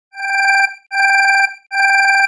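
Electronic ringing tone sounding in three pulses, each about half a second long and about 0.8 s apart, with a fast warble.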